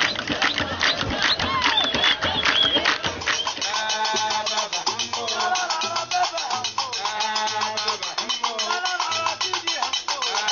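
Gnawa music: fast, dense clattering percussion and hand-clapping, with voices singing. From about a third of the way in, the low plucked bass line of a guembri (Gnawa skin-topped lute) comes in under repeated sung phrases.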